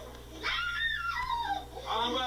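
A toddler's high-pitched squeal that slides downward in pitch, followed near the end by another short vocal sound.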